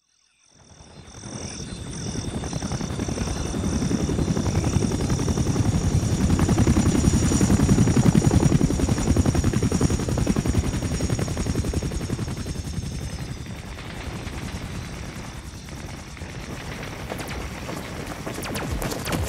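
Sound-effect intro of a helicopter's rotor chopping as it swells up and then eases off. Over it a high chirp like marsh frogs or insects pulses about twice a second, then turns steady. Sharp cracks start near the end.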